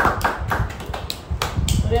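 Hand clapping: a run of sharp claps at uneven spacing.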